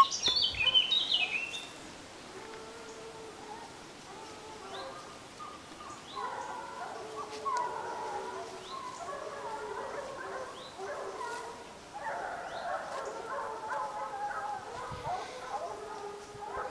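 A pack of hunting hounds baying in the distance, several voices overlapping, as they run a wild boar's trail; the cry grows fuller about six seconds in and again near twelve seconds. A bird sings close by with quick high chirps in the first two seconds.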